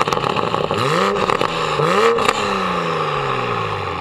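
A 2020 Toyota Supra's turbocharged 3.0-litre inline-six is revved twice at a standstill through a catless Fi valvetronic exhaust with its valves open. A short blip comes about a second in, then a higher rev just after two seconds that falls back slowly toward idle.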